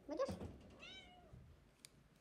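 A pet cat meowing twice, short rising-and-falling meows, as it waits at its owner's feet to be fed. A small click near the end.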